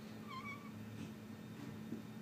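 Dry-erase marker squeaking briefly on a whiteboard as a line is drawn, one short high squeak about half a second in. A faint steady low hum runs underneath.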